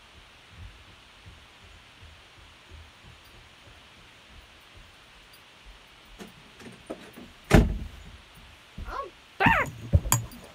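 A faint steady hiss, then from about six seconds in a run of knocks and thumps, the loudest about a second and a half later, with a brief wavering squeal near the end.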